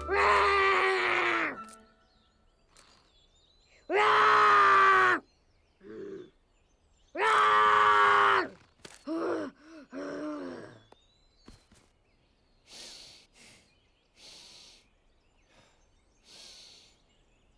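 An animated young dragon's voice straining at roaring practice: three long, loud, groaning roars of about a second each, then a few shorter, weaker sputters and faint breathy puffs near the end.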